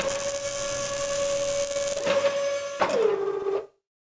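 Sound-effect whine of robot-arm servo motors, a steady pitched hum, with a bright crackling hiss of arc welding over it for about the first two seconds. Near three seconds the whine slides down in pitch, and the sound stops abruptly shortly before the end.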